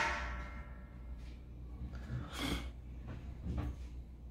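A single sharp knock with a short ringing tail right at the start, then a soft, breathy rustle about two and a half seconds in, over a low steady hum.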